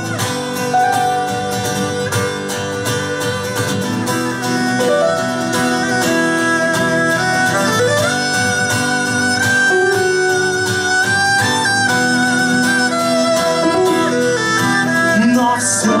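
Instrumental break of a live acoustic rock song: a violin plays a bowed melody with slides between notes over strummed acoustic guitars.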